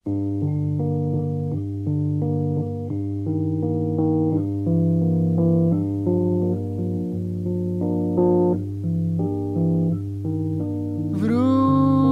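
Instrumental opening of a 1974 Polish ballad recording: a guitar picking single notes over a held bass note. A higher, wavering line with vibrato comes in near the end.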